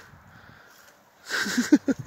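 A person laughing in a few short, breathy bursts about a second and a half in, after a faint quiet stretch.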